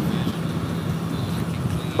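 Steady wind and engine noise of a motorcycle riding at highway speed, picked up by a helmet-mounted camera microphone.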